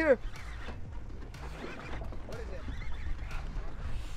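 A drawn-out shout trails off at the start. Then there is a steady low rumble of wind and sea aboard a boat, with faint voices in the background.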